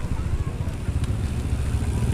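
Wind buffeting the microphone of an action camera on a slowly rolling bicycle, heard as a steady, fluttering low rumble with road noise.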